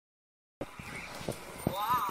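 Furby toy starting up: a few soft mechanical clicks from its moving parts, then, near the end, a high warbling electronic voice that wavers up and down.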